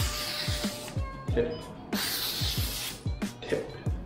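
Freshly sharpened Aritsugu gyuto blade slicing through a sheet of printed catalogue paper in two strokes of about a second each, roughly two seconds apart: a paper-cutting check of the new edge from heel to tip. Background music with a steady beat plays throughout.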